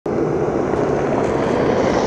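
Steady jet engine noise of a large aircraft flying low past, starting abruptly and holding level.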